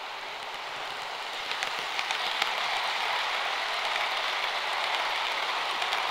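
Model train running along the track: a steady rolling whirr of the locomotive and coach wheels on the rails, growing louder about a second and a half in as the train comes past, with a few light clicks.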